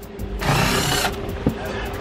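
Cordless drill-driver with a Phillips bit running in one short burst of about two-thirds of a second, backing out a trim-panel bolt.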